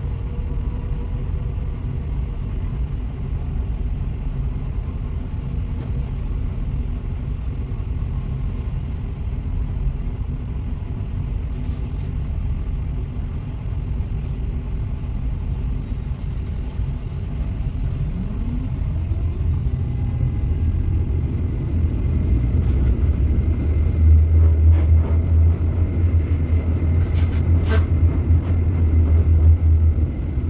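Tram cabin noise: a steady low rumble while the tram stands, then, about two-thirds of the way in, a short rising motor whine as it pulls away. The low rumble grows louder as it gets under way, with a faint steady high whine and a single click near the end.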